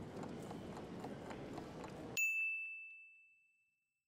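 Countdown-timer sound effect: soft ticking, then a single bell ding about two seconds in that signals time is up, ringing out as one high tone for about a second.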